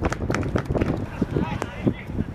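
Voices calling out across a football pitch during play, short shouts among many scattered knocks and thumps.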